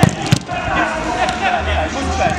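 A football kicked hard on artificial turf: two sharp thuds about a third of a second apart near the start, over players' voices.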